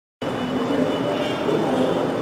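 Steady background noise of a hall: an even hiss and hum starting abruptly just after the beginning, with no clear speech.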